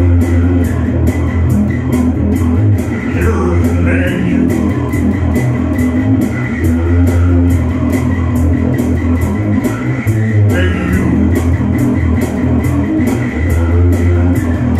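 Electric bass guitar played in a heavy rock rhythm, with strong low notes over a steady beat that ticks about three times a second.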